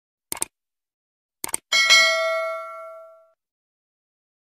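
A few short clicks, then a single bell-like metallic ding that rings on with several overtones and fades out over about a second and a half.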